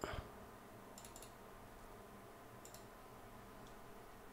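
Faint computer clicks in small groups, two or three together about a second in, a pair near three seconds and a single one near the end, after a brief soft sound at the very start.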